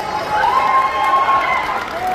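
A voice holding one long, high drawn-out note for about a second over crowd noise in a hall.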